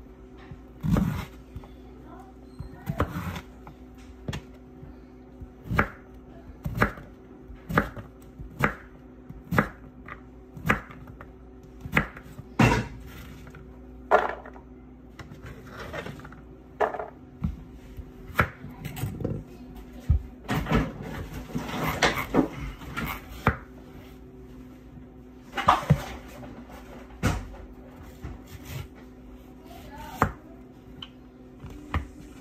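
Chef's knife chopping squash, each stroke a sharp knock on a plastic cutting board, about one a second and uneven, with a busier run of quicker strokes about two-thirds of the way in. A steady low hum runs underneath.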